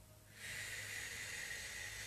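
A person's long, audible exhale, a steady breathy hiss starting about half a second in and lasting to the end.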